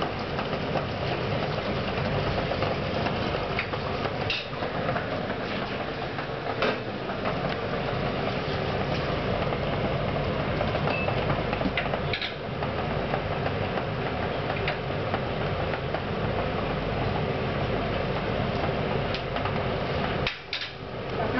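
Stainless pot of water at a rolling boil on a gas burner: steady bubbling and rumbling, with a few brief clinks of a metal spoon against the pot as dough balls are lowered in and moved about.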